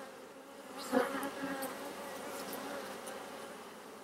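Honey bees buzzing around an open hive and a frame of brood comb, a steady hum that swells about a second in.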